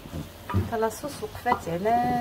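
Wooden spoon stirring a rice and tomato stuffing in a steel pot, with a low sizzle of the oil under it, while a woman talks over it.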